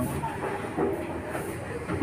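Faint, indistinct chatter of people's voices over a steady low background rumble.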